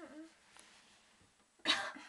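A girl's voice trailing off with a falling pitch at the start, then one short, sharp cough about three-quarters of the way through.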